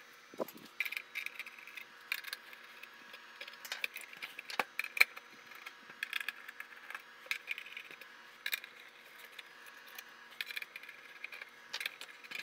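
Small, irregular metallic clicks and rattles of a screwdriver working the screws out of a thin steel instrument case, with loose screws clinking as they are set down.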